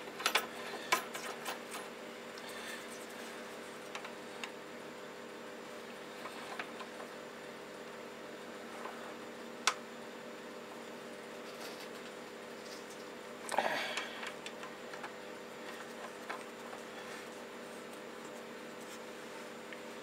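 Small metal clicks and taps as a collet and a metal workpiece are handled and fitted into a lathe's collet chuck, with one sharp click about ten seconds in and a louder burst of handling a few seconds later. A steady faint hum runs underneath.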